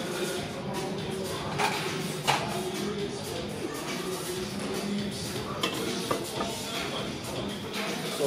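Background music over a gym's murmur of indistinct voices, with a couple of sharp metal clinks about one and a half and two seconds in.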